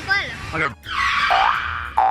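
Cartoon-style comedy sound effect added in editing, a held sound with two quick rising pitch glides, the second right at the end, over a brief spoken "okay".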